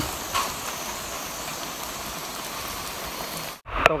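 Steady rain hiss, cut off abruptly by an edit shortly before the end.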